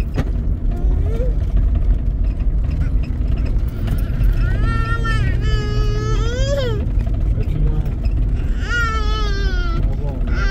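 A baby crying in two long wails, about four seconds in and again near the end, each rising sharply before it breaks off, over a steady low rumble.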